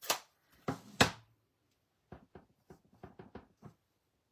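Sharp plastic clacks, the loudest about a second in, then a run of lighter taps. They come from a stamp ink pad's plastic case being set down and opened and a clear acrylic stamping block being handled and tapped.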